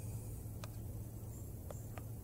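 A few faint clicks of a spoon against a metal canteen cup as soup is scooped out, over a low steady hum.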